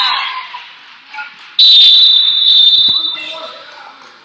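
Referee's whistle blown in one long, shrill blast, starting suddenly about a second and a half in and lasting about a second and a half. It sounds over crowd voices that fade in the gym's echo.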